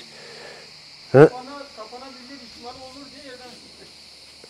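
Cicadas buzzing as a steady high-pitched hiss, with a short loud spoken word about a second in and quiet talk after it.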